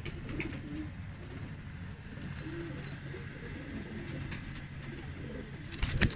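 Domestic pigeons cooing repeatedly in low, wavering calls, with a brief loud knock near the end.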